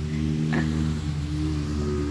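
A small engine running at a steady, even pitch.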